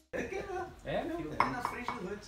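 Indistinct conversation among several people, with dishes and cutlery clinking now and then.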